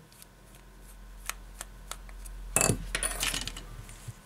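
A few light clicks of a precision screwdriver working at small screws in a phone's metal midframe, then a short, loud metallic clatter about two and a half seconds in as small metal parts are handled or set down.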